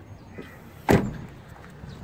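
A single knock about a second in.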